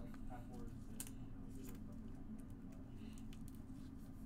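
Faint handling of baseball cards: a few light taps and rustles as a card is slipped into a plastic penny sleeve and the cards are shuffled, over a steady low hum.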